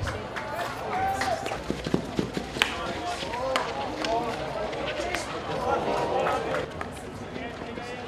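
Field hockey in play: sharp cracks of sticks striking the ball and clashing, amid players' short shouts and calls.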